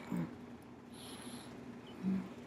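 A woman's short, low vocal sound just after the start, over a faint steady hum, with a soft rustle about a second in.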